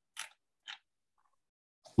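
Near silence, broken by two brief, soft, hissy noises about half a second apart.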